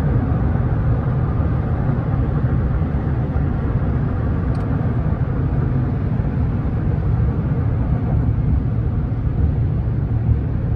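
Car cabin noise while driving at road speed: a steady low rumble of tyres, engine and wind heard from inside the moving car.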